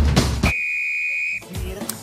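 The last drum hits of a TV programme's intro music, then a steady high electronic beep lasting about a second.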